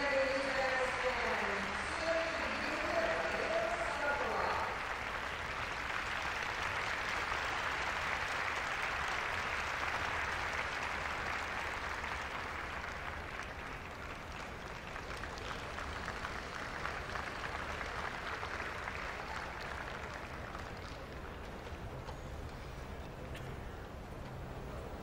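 Large arena crowd applauding. The applause holds steady, then gradually dies down over the last several seconds.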